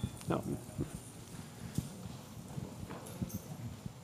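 Room tone in a large meeting room with scattered soft knocks, clicks and shuffling from a seated audience, and a single spoken "No" just after the start.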